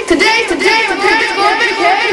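High-pitched voices chattering excitedly, a woman's among them, with the pitch swooping rapidly up and down and more than one voice overlapping.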